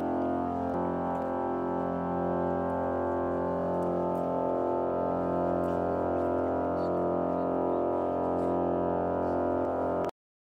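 Pipe organ playing slow, sustained chords over a held low note, the chord changing about a second in.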